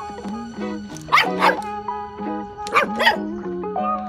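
Background music with an 8-week-old mini Goldendoodle puppy barking in short yaps, two quick pairs about a second and a half apart.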